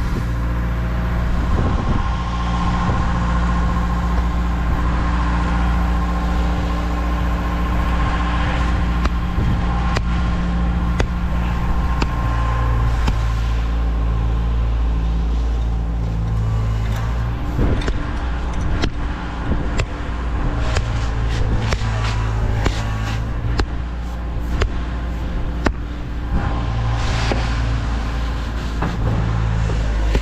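Concrete pump truck's engine running steadily, its pitch stepping up and down as it pumps against a plugged hose line. In the second half, repeated sharp knocks: a sledgehammer striking the hose to loosen the plug.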